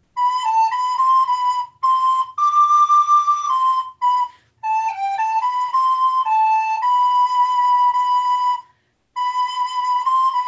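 Soprano recorder playing a Renaissance dance melody solo, one note at a time, each note tongued with historic articulation patterns. It is played in short phrases with brief breaks, the longest near nine seconds in.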